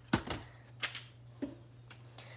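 Four sharp clicks and knocks from handling a toy revolver and its shell casings in a hard case. The first, about a tenth of a second in, is the loudest and carries a dull thud; the rest come at roughly half-second gaps, one of them faint.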